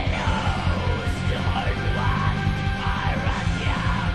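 Black metal music: distorted guitars, bass and drums playing continuously under a harsh yelled vocal.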